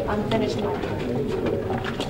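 Indistinct overlapping talk of several people at once, with no single voice standing out.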